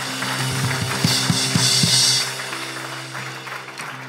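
Live band music: sustained keyboard chords with a few drum hits and a cymbal wash about a second in, easing off toward the end.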